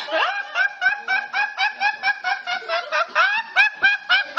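A teenage boy laughing hysterically in a rapid run of high, squeaky laugh pulses, about four a second.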